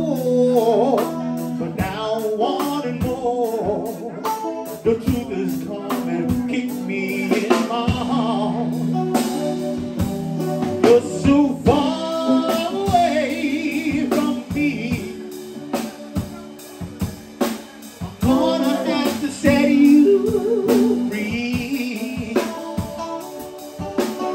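Live song: a man singing over an electric guitar and a drum kit.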